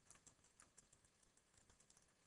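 Faint computer keyboard typing: quick, irregular key clicks, several a second.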